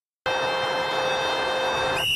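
A radio station jingle opening on a sustained electronic chord of steady held tones. It starts abruptly out of dead silence about a quarter second in.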